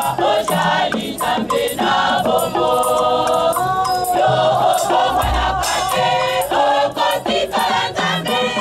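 A choir singing, several voices in harmony.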